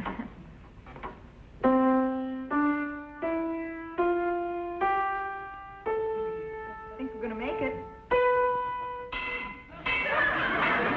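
Piano being tuned: single notes struck one at a time, each ringing and fading, climbing step by step in a slow rising scale of about nine notes, one a second.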